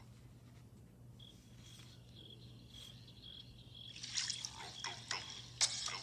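A near-quiet gap in the VHS playback heard through a phone speaker: a low steady hum and a faint high-pitched chirp repeating about twice a second. About four seconds in, the next trailer's sound starts up quietly.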